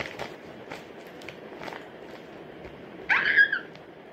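Light clicks and rustles of a plastic blind bag and squishy toy being handled, then about three seconds in a short, high-pitched squeal that falls in pitch.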